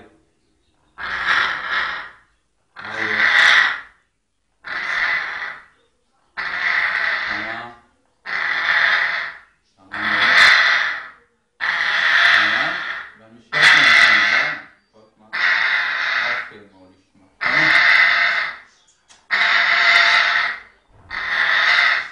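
African grey parrot giving about a dozen rasping calls, each a second or so long, repeated steadily every couple of seconds.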